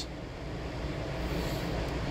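Steady background machine noise: a low hum under an even hiss, growing a little louder over the two seconds.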